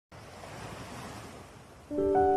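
Quiet wash of ocean surf: one swell of waves rises and then eases off. Piano notes come in right at the end.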